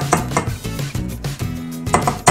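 A few light clinks and knocks of a stick blender's metal head against a glass bowl, over steady background music.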